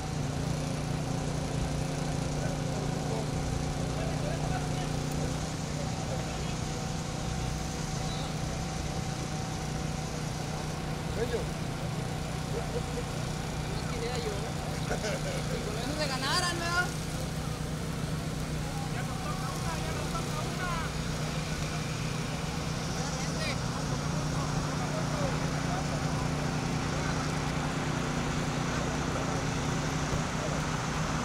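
A steady low engine hum, like a vehicle idling, with a higher note in it that drops out about five seconds in and comes back near the end. Faint voices sound in the background.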